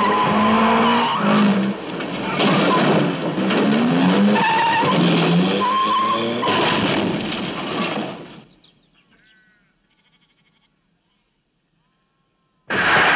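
Cars being driven hard in a chase: engines revving up and down and tyres squealing as they skid through bends. The sound fades out about eight seconds in, leaving near silence.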